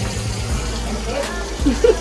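Lamb chops frying in butter and oil in a skillet, a steady sizzling hiss. Voices and laughter break in near the end.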